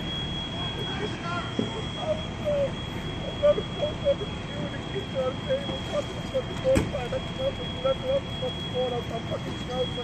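Outdoor sound of a working house fire: a steady low rumble of idling fire apparatus under distant voices calling out in short bursts, with a constant high-pitched tone running throughout. A single sharp click comes about seven seconds in.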